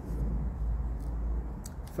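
A low rumble that eases off near the end, with a few faint clicks.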